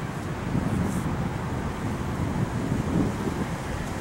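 A COTA city bus pulling in to a stop, its engine a low, steady rumble, with wind noise on the microphone.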